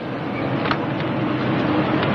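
A car engine running steadily, getting a little louder, with a short click about two-thirds of a second in.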